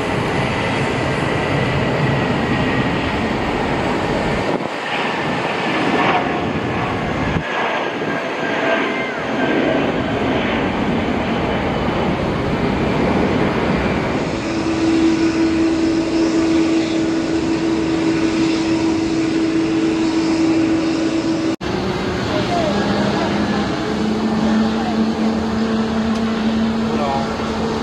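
Airbus A320 airliner jet engines running as the aircraft moves along the runway: a steady rushing roar, joined about halfway through by a steady hum. Near the end the sound drops out for an instant and a lower hum takes over.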